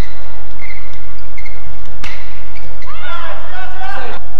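Badminton rally: sharp cracks of a racket striking the shuttlecock, one at the start and one about two seconds in, with short shoe squeaks on the court mat between. Over the last second a voice shouts as the point ends. A steady low hum runs underneath.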